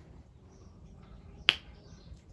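A single sharp click about one and a half seconds in, over faint room noise.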